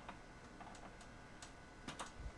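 Faint, sharp ticks at about two a second over low background hiss.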